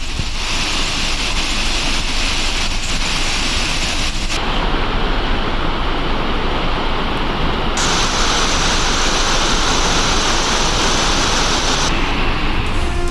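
A waterfall in full flow, water crashing steadily down rock steps. Its tone shifts abruptly twice, about four and eight seconds in.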